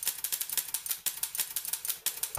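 Typewriter-style key clicks, a rapid run of about ten a second, as the on-screen text types out letter by letter.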